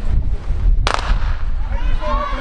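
Starter's pistol fired once about a second in, the signal that starts the relay, over a low wind rumble on the microphone. Crowd shouting and cheering rises near the end.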